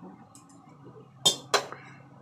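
Two sharp clinks about a third of a second apart: a metal spatula knocking against a metal loaf pan and a plate while a slice is served.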